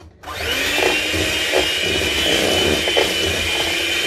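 Electric hand mixer switched on and running steadily with a high whine, its whisk beaters mixing cookie batter in a stainless steel bowl.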